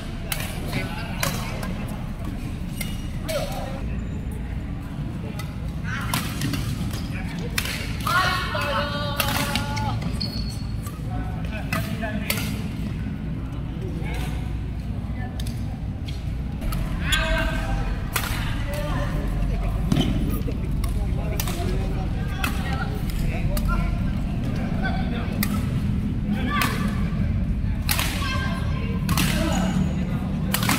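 Badminton rackets striking a shuttlecock during a doubles rally, sharp hits at irregular intervals, echoing in a large indoor hall. Players' voices call out a few times.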